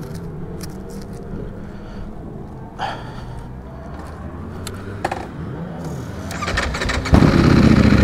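Ducati Panigale V4 Speciale's V4 engine, fitted with a full titanium Akrapovič exhaust, idling with a steady low note and a couple of short clicks. About seven seconds in it opens up sharply and gets much louder as the bike pulls away.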